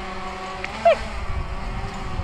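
Steady low outdoor rumble with one short, high, falling cry just under a second in.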